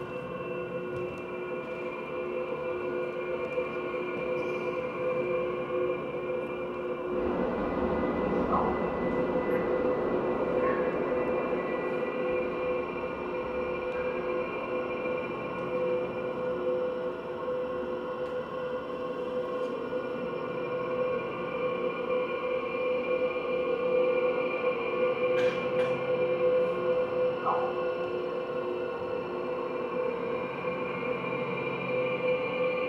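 Electronic noise cue from a theatre's sound system: a steady drone of several held tones, joined about seven seconds in by a hissing noise wash, the whole slowly swelling louder.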